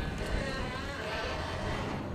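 Vehicle running, a steady low rumble of engine and road noise.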